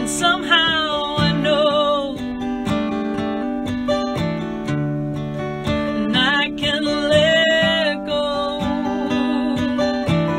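A song: strummed acoustic guitar chords, with a melody line that glides and wavers in pitch over them in two phrases, near the start and again about six seconds in.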